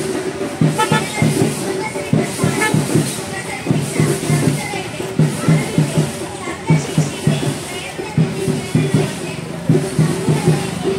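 Procession drums beating a steady rhythm, with the voices of the marchers over it.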